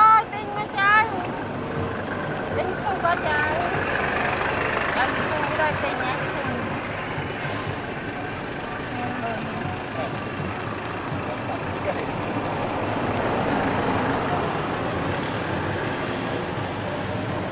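Steady outdoor background noise with faint, indistinct voices, opening with a few short, high, rising squeaks in the first second.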